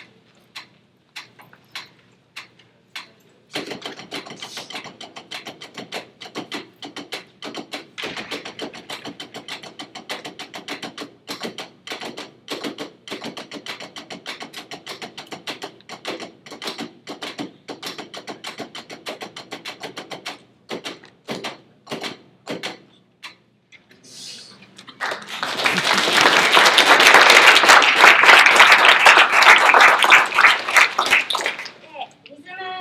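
Drumsticks striking rubber practice pads: a few spaced taps, then several players drumming rapid, even strokes together in time, thinning to spaced strokes after about 20 seconds. Applause breaks out a few seconds before the end and is the loudest sound.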